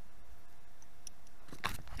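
Quiet outdoor background with a couple of faint clicks, then a short rustling burst near the end from the camera being handled and moved.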